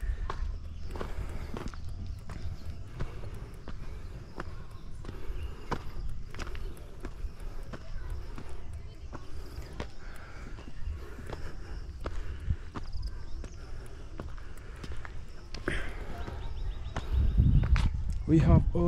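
Footsteps crunching on a dirt and gravel footpath, walking uphill at a steady pace, about one or two steps a second, over a steady low rumble on the microphone.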